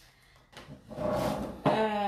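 A small wooden side table being grabbed and shifted on a wooden worktop: about a second of handling and scraping noise with a few knocks, starting about half a second in. Near the end a woman's voice comes in with a held, drawn-out vowel.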